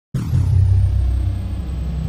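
Deep rumble of a channel-intro sound effect that starts abruptly just after the opening, with a thin high sweep falling in pitch over it at the start.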